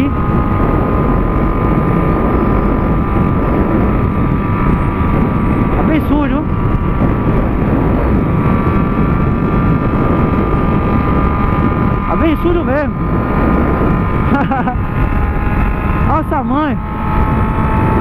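Honda CB600F Hornet's inline-four engine with an Atalla 4x1 exhaust cruising at a steady speed, its engine note holding one pitch under heavy wind noise on the helmet microphone.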